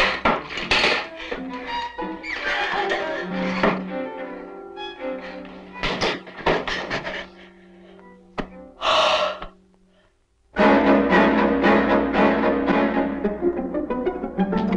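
Horror film soundtrack: a run of sharp knocks and thuds over tense music with held tones. Just after ten seconds it falls to a brief hush, then a loud burst of string music sets in.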